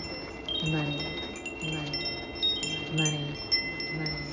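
Wind chimes ringing: a scatter of clear, high bell-like tones that strike one after another and ring on, over short low hum pulses about once a second.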